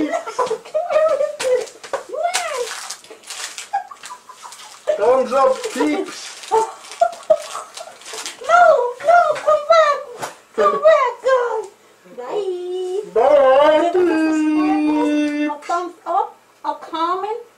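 Voices making wordless vocal sounds, sliding up and down in pitch, with a long held note near the end and a few short crackles a few seconds in.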